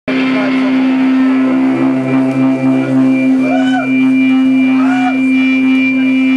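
Amplified electric guitar holding a steady droning note, with a thin high whine of feedback joining about halfway through and two short rising-and-falling calls over it.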